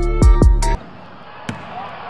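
Backing music with a beat and deep falling bass notes cuts off suddenly under a second in. It gives way to the live sound of a basketball game in an echoing gym: a sharp ball bounce about a second and a half in, and short sneaker squeaks near the end.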